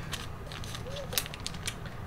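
Foil trading-card pack wrapper crinkling as it is gripped and torn open from the side, a few short sharp crackles.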